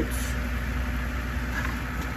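Air pump for a hydroponic bucket's air stone running, a steady low hum with a soft hiss.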